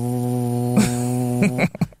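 A man's voice imitating the motor of a reclining cinema seat: a steady hum held at one pitch for about a second and a half, followed by laughter near the end.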